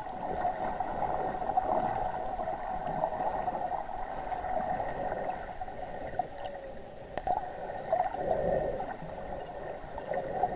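Underwater ambience picked up by a submerged camera: a steady muffled hum with crackling and gurgling water, swelling louder about eight seconds in.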